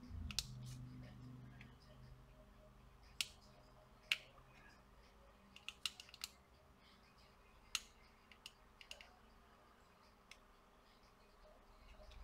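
Sparse small clicks and taps of hand tools against a circuit board during soldering, a dozen or so over the stretch, the loudest about three and four seconds in. A faint low hum sits under the first few seconds and then fades.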